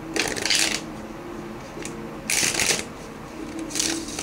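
Tarot cards being shuffled by hand: three short bursts of shuffling, about a second and a half apart.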